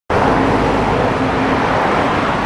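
Loud, steady road-traffic noise with a low hum, such as a passing car or bus.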